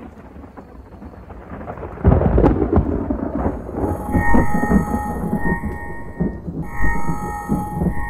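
Soundtrack sound design: a deep thunder-like rumble that swells up and booms in sharply about two seconds in. About four seconds in, steady high electronic tones join it in short blocks.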